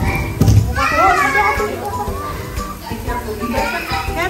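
Background chatter of children's and adults' voices, with music playing.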